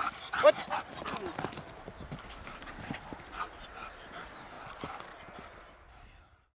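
A dog running through tall dry grass: grass rustling and irregular soft footfalls, dying away near the end. A short spoken word comes about half a second in.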